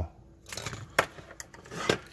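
A small circuit board and test leads being handled and set down on a cutting mat: a few light clicks and scrapes, the sharpest click about halfway through.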